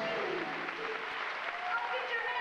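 Live audience applauding, with voices heard over the clapping.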